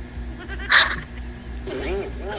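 Laughter over a video call: a short breathy burst about a second in, then a wavering, pulsing laugh near the end, over a steady low hum.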